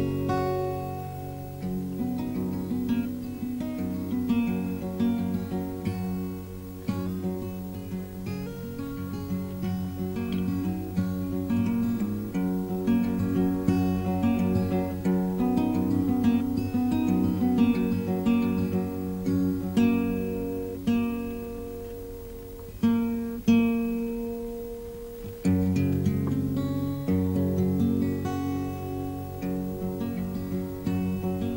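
Solo acoustic guitar fingerpicked as the instrumental introduction to a song: a steady flow of ringing picked notes over sustained bass notes. About three-quarters of the way through, a louder struck note leads into a couple of seconds without the bass, which then comes back in.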